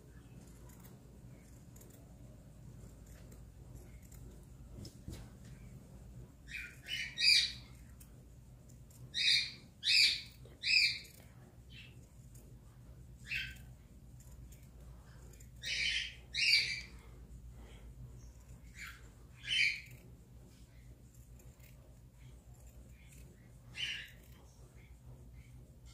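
A bird calling in short chirps, about a dozen of them, some in quick pairs or threes, over a faint steady low hum.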